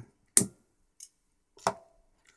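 Sharp clicks of small hand tools and parts being handled on a workbench cutting mat: two loud clicks a little over a second apart, with a faint tick between them.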